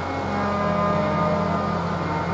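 Harmoniums holding a steady, sustained chord, the reeds droning without drum strokes; a new, lower note comes in just after the start.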